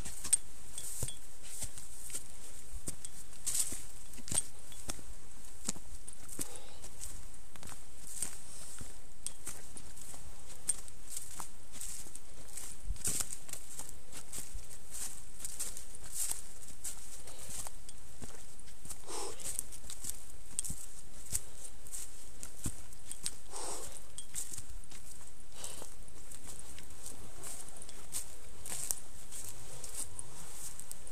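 Irregular footsteps and rustling of someone walking a rocky, leaf-covered mountain path, many short uneven clicks over a steady hiss.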